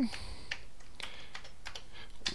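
Typing on a Commodore 128 keyboard: a run of separate key clicks as a command is entered.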